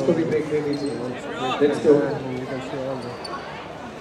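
Several people's voices talking and calling out in a crowded hall, loudest in the first two seconds, with a few sharp knocks or thumps among them.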